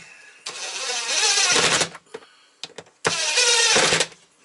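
Cordless drill running on screws in two short runs, the first about a second and a half long and wavering in pitch, the second about a second long near the end.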